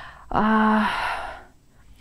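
A woman's voice holds one flat hesitation sound, like a drawn-out "эээ", for about half a second. It trails off into a breathy exhale, and then there is a short pause.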